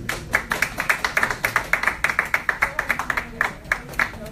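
Small audience applauding, with individual hand claps distinct, thinning out near the end.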